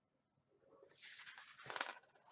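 Small plastic counting tokens and a card being handled on a wooden table: a soft rustle starting about a second in, then a cluster of quick clicks near the end.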